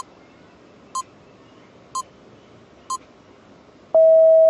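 Countdown timer sound effect ticking off the answer time: four short, identical high beeps, one a second.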